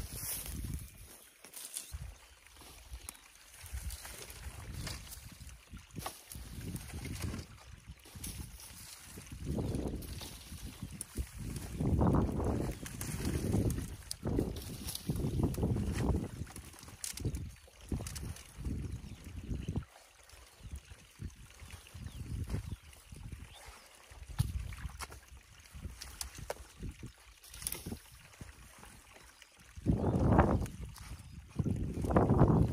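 Wind gusting on the microphone in irregular low rumbles, with rustling of dry reeds and boots sloshing through a shallow, muddy ditch.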